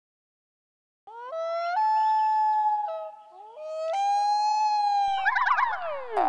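A siren-like howl that climbs in steps to a held high tone, dips and climbs again, starting about a second in. Near the end several falling whistles slide down in pitch.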